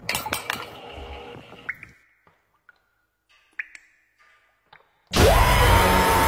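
Muffled water spraying and clattering inside a running dishwasher, heard from a phone recording in the rack; it fades out after about two seconds into near silence broken by a few faint ticks. Loud, bass-heavy music cuts in abruptly about five seconds in.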